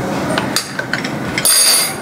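Off-camera kitchen handling sounds: a few light knocks and clatter, then a brief hissing rustle near the end.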